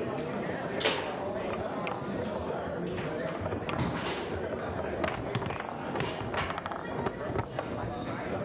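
Foosball table in play: irregular sharp clacks of the ball being struck by the figures and of the rods knocking, the loudest about a second in, over a murmur of voices.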